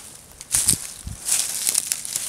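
Footsteps through dry fallen leaves and twigs, a run of rustling steps starting about half a second in.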